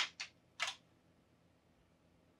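Three short, sharp clicks from an Amiga 500 in the first second as it is reset, the first the loudest.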